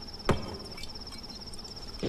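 Crickets chirping in a steady, rapid high trill, with one sharp knock about a quarter second in.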